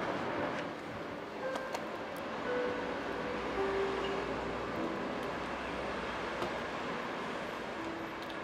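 Steady hum of city road traffic, with a few faint tones drifting through it.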